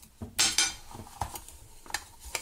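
Mesh drawstring bag rustling and scraping as it is handled, with a few light clinks from the metal cookset inside it.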